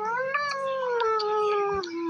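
A single long wailing cry, its pitch rising for about half a second and then slowly falling, over a low steady hum.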